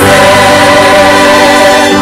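Gospel choir music playing loudly and continuously: many voices singing sustained notes together.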